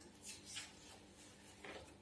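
Scissors cutting through folded paper: a few faint snips with paper rustling, the last one a little louder near the end.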